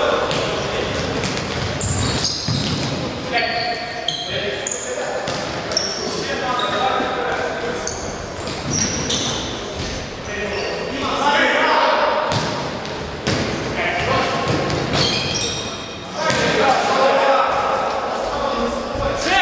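Futsal ball repeatedly kicked and bouncing on a wooden gym floor in an echoing hall, with many short high shoe squeaks and players calling out.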